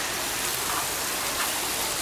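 Ground-level jet fountain in a paved square, its water jets splashing down into a shallow basin. It makes a steady hiss that sounds like rain.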